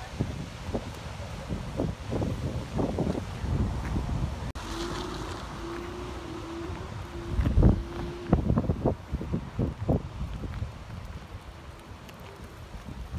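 Wind buffeting the microphone in irregular low gusts, strongest about halfway through, over the wash of ocean surf. A sharp click comes a little before halfway, followed by a faint steady tone lasting about three and a half seconds.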